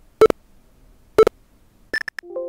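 Two short beeps from the NVDA screen reader, about a second apart: its working signal that the portable copy is still being created. A brief sharp click comes near the end.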